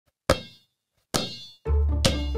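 A basketball bounced twice on a hard floor, each bounce a sharp ping with a short ringing tail. About a second and a half in, bass-heavy music begins.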